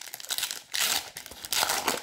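Plastic wrapping of a trading-card packet crinkling and tearing as it is opened by hand, in a few rustling bursts.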